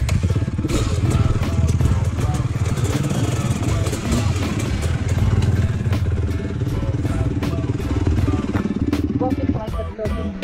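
Dirt bike engine running steadily close by, with no revving.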